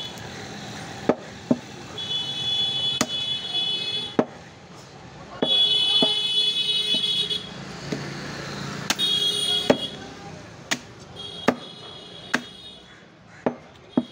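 A meat cleaver chops through a goat's head into a wooden log chopping block, giving about a dozen sharp, irregular chops. A shrill high-pitched tone also sounds in four stretches of one to two seconds each, from a source that is not seen.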